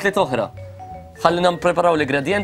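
People talking, with a short pause about half a second in that holds a brief, faint two-note chime.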